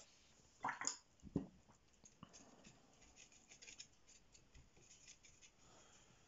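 Faint scratching and rubbing of a watercolour brush working paint in a plastic palette well, in many small quick strokes. A few louder knocks or scrapes come in the first second and a half.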